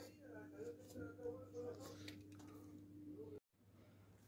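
Near silence: a faint steady hum under faint background voices, with a few soft clicks. About three and a half seconds in, the sound cuts out completely.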